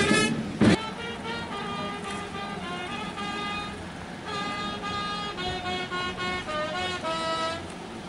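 A brass band playing a slow tune in long held notes, with one sharp knock under a second in.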